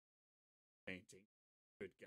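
Dead silence, broken twice by a man's short exclamations: once about a second in and again near the end, where he says 'Good God.'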